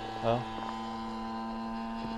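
Husqvarna 45cc two-stroke chainsaw engine driving an RC plane's propeller in flight, running at a steady throttle as an even drone with a clear, unchanging pitch.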